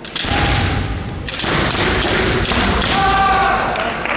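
A kendo exchange: the fighters' shouted kiai over a rapid run of knocks from stamping footwork on a wooden hall floor and bamboo shinai strikes. The sound comes in suddenly about a quarter-second in, dips briefly past the first second, then carries on.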